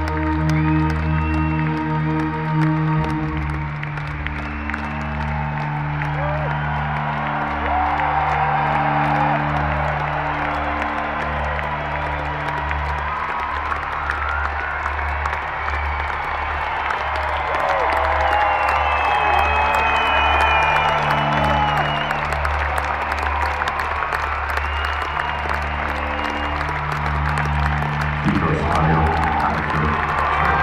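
Arena concert crowd cheering and whistling over slow, sustained low synth-bass notes played through the PA. About two seconds before the end, the crowd noise swells with clapping.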